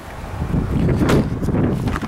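Wind buffeting the microphone, a rough low rumble that swells up shortly after the start, with a couple of faint knocks near the middle.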